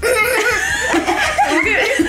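A group of women and a young girl laughing loudly together, the laughter breaking out suddenly at the start and running on with several voices at once.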